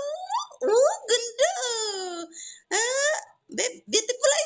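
Wordless, sing-song voice sounds of the kind used in play with a baby: long pitch glides that rise, then fall, then rise again, in several drawn-out vocal sounds with short breaks between them.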